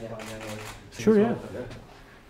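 A man's voice sounds briefly about a second in, over light rustling and handling noise as people shift around in a small room.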